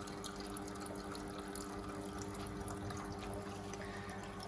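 Desktop filament extrusion line running, its puller and winder motors giving a steady hum of a few held tones over an even hiss.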